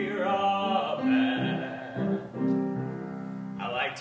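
Grand piano accompaniment playing sustained chords under a male voice singing a musical theatre song.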